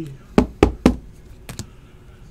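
Three sharp knocks about a quarter second apart, then a faint double tap: a trading card in a rigid plastic top loader knocked against the tabletop while being put away.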